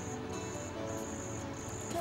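Crickets chirping in regular repeated trills, a little under two a second, over soft background music of long held notes.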